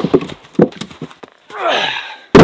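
Split firewood pieces knocking and clattering onto the block and ground just after a maul stroke. Near the end comes a louder half-second sound that falls in pitch.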